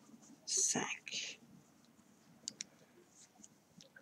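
Faint sounds of a crochet hook working yarn, with a couple of small clicks past the middle; a brief soft whisper about half a second in is the loudest sound.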